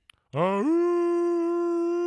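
A long horn-like note that slides up in pitch and then holds one steady tone for about two seconds before stopping. It is sounded in answer to the call to blow the horn.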